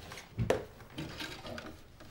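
Handling of an old desk telephone: a sharp knock about half a second in, then light clinks and rattles.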